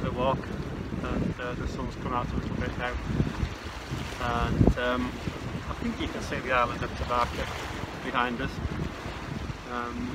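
Quiet, muffled speech through face masks, with wind rumbling on the microphone throughout.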